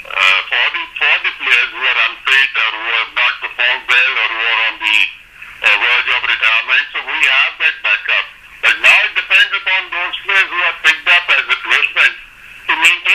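A man's voice talking continuously over a telephone line, thin and narrow in sound, with a short pause about five seconds in.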